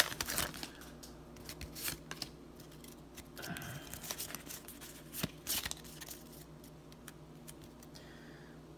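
Pokémon trading cards being drawn from a foil booster pack and handled in a stack, with faint scattered clicks and rustles of card stock.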